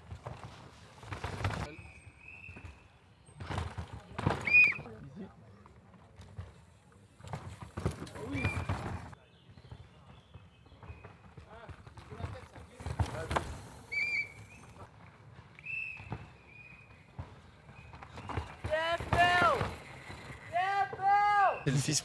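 Downhill mountain bikes rattling down a rough, rooty forest track as riders pass one after another, with spectators shouting encouragement; the shouting is loudest near the end.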